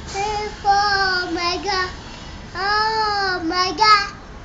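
A young boy singing a Malayalam song unaccompanied, holding two long notes, the second one rising and then falling in pitch, with a short sung phrase near the end.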